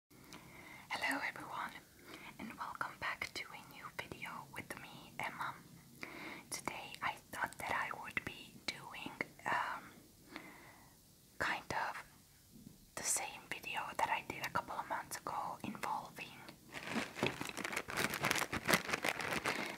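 A woman whispering close to the microphone in short phrases with brief pauses. Near the end, a clear plastic bag starts crinkling in her hands.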